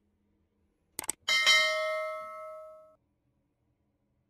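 Subscribe-button animation sound effect: two quick clicks about a second in, then a bright bell ding with several ringing tones that fades out over about a second and a half.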